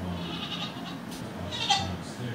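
Billy goat bleating: a faint call, then a louder, sharper one near the end.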